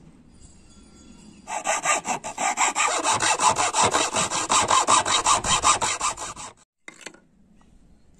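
Hand saw cutting a thin wooden board clamped in a vise, in quick, even back-and-forth strokes that start about a second and a half in and stop abruptly near the end.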